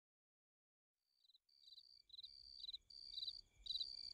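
Faint insect chirping like a cricket's, fading in after about a second of silence: a held high tone alternating with short pulsed trills, repeating about twice a second.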